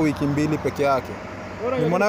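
Man talking in the street, with a car driving past close by.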